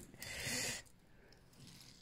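A person's short, breathy exhale, lasting under a second, followed by faint room tone.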